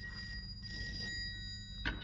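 A telephone ringing twice in a quick double ring. A sharp knock comes near the end.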